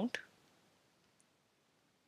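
The end of a spoken word, then near silence: room tone with one faint click about a second in.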